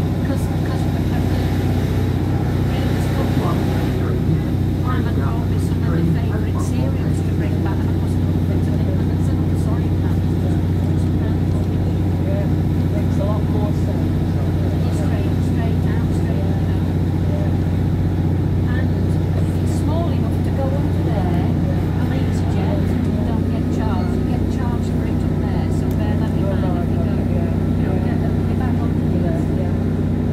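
Inside a Class 150 Sprinter diesel multiple unit under way: the steady drone of its underfloor Cummins diesel engine and the running noise of the train on the track, with indistinct passenger chatter in the background.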